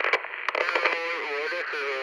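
A thin, narrow-band voice that sounds as if it comes through a radio speaker, with no bass and a clipped top.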